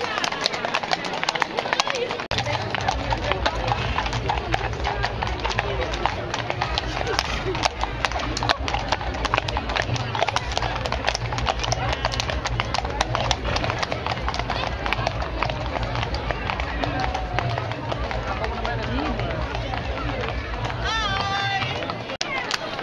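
Horses' hooves clip-clopping at a walk on a paved street, with a crowd's voices chattering. A steady low rumble runs under it from about two seconds in until near the end.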